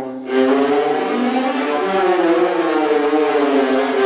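A section of violas playing together, bowing held notes that shift in pitch, with a brief break just at the start.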